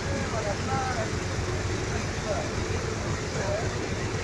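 Steady low rumble of a motor vehicle, with people talking faintly over it.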